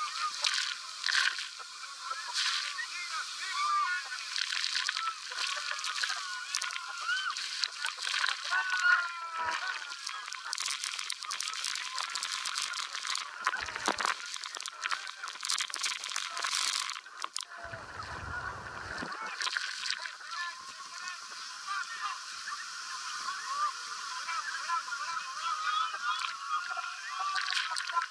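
A boatload of passengers shrieking, whooping and yelling over a constant rush of water and spray as the falls' spray drenches them. Heavier spells of splashing spray come midway.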